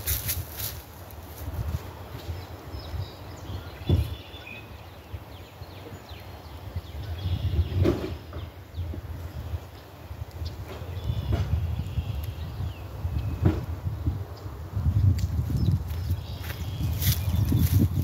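Footsteps and a few sharp knocks over a low, uneven rumble, with faint chirps in the background.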